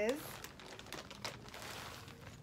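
Clear plastic bag crinkling in a run of quick crackles as a wig is pulled out of it.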